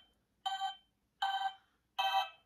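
Simon Micro Series handheld electronic memory game beeping: two short electronic tones of similar pitch about three-quarters of a second apart, with a third starting at the very end.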